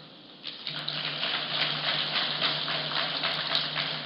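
An audience applauding: the clapping starts about half a second in and then holds steady, with a low steady hum underneath.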